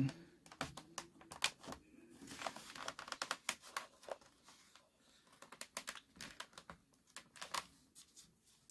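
Light, irregular plastic clicks and taps with short rustles: a small RC aileron servo and its wire lead being handled and pressed against the foam wing at its mounting slot.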